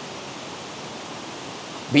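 Steady, even rush of water from a waterfall and the rocky creek below it, unchanging throughout. A man's voice starts just at the end.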